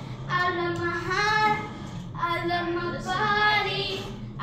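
A child singing without clear words, in three short held phrases, each ending with a rising slide in pitch.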